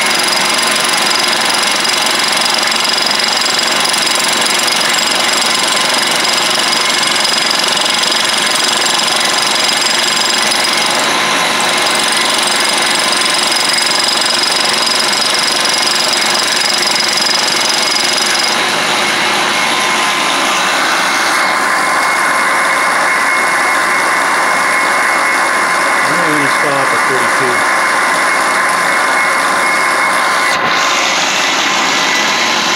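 Milling machine running, its rotating cutter taking a cut across a metal scope ring held in a vise: a loud, steady machining noise with a high ringing tone that drops out about two-thirds of the way through.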